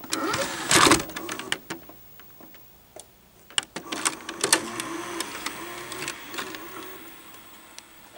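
Clicks and clunks, then a steady mechanical hum with light ticking that fades over a few seconds, as home video equipment starts up.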